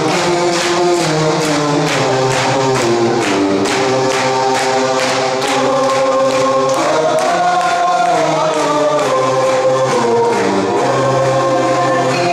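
Dance music with sung vocals and a steady beat.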